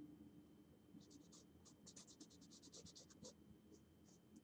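Faint, quick scratchy strokes of a paintbrush working white paint, about seven a second for a couple of seconds.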